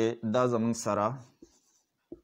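A man speaks for about a second, then a marker pen writes on a whiteboard in faint, short scratchy strokes.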